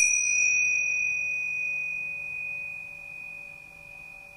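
A small meditation bell struck once, ringing on with a single high, clear tone that slowly fades. Its brighter upper overtones die away within the first second or so.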